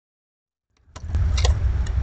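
A squirrel bumping against the camera: a few sharp clicks and taps over a low rumbling on the microphone, starting just under a second in.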